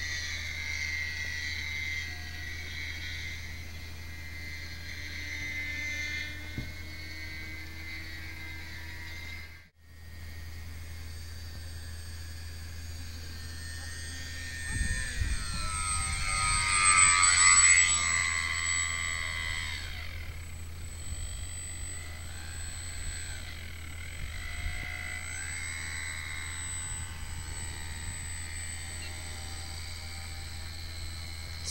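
Motor and propeller of a small foam RC seaplane in flight, a high whine whose pitch wavers with the throttle. Around fifteen to eighteen seconds in it grows loudest as the plane passes low and close, then the pitch sweeps downward as it goes by.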